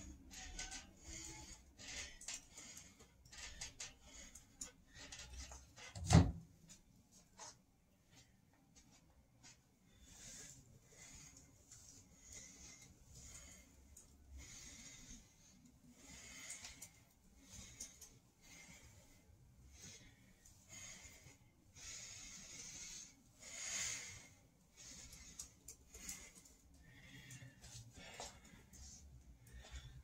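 A man breathing hard through his mouth while doing pull-ups and squats, a long series of short, heavy breaths. A single sharp thump about six seconds in.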